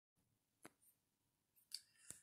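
Near silence: quiet room tone with two faint short clicks, one early and one near the end.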